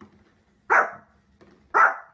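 Small fluffy dog barking twice, two loud barks about a second apart.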